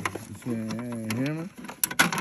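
Sharp clicks and clatter of plastic and metal as a hand moves the tray and contents inside a freshly opened safe, loudest right at the start and near the end. In the middle, a low drawn-out vocal sound lasts about a second.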